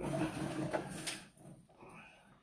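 Noisy scraping as the sewer inspection camera's push cable is fed down the drain line, dying away after about a second and a half.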